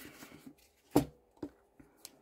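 A few small knocks and clicks of gel polish bottles being handled and set into their display tray, the loudest about halfway through.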